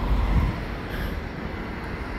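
Gusty wind buffeting the phone's microphone: an uneven low rumble of noise, strongest about half a second in.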